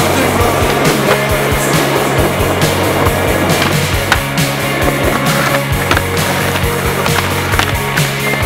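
A band's music track playing over skateboard sounds: urethane wheels rolling on concrete and sharp knocks of the board's tail pops and landings.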